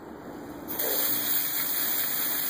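Water hose spraying: a steady hiss of running water that comes on sharply a little under a second in.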